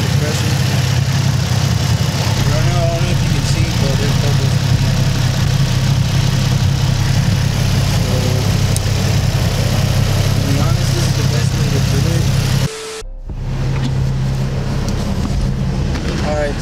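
A 2004 Nissan 350Z's VQ35DE V6 idling steadily with the hood open while trapped air is bled from its newly refilled cooling system. The sound drops out briefly about three-quarters of the way through.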